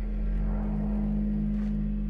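Low, steady droning hum of a horror film's ambient score, with a faint swell of noise around the middle.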